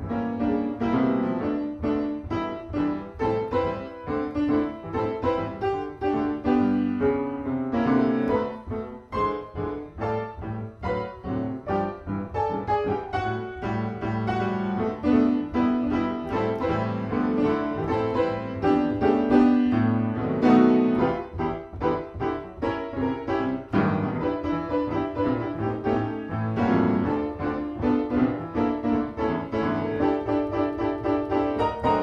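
Solo piano improvisation in a jazz and lounge style: a continuous flow of chords and melodic lines with many notes struck in quick succession.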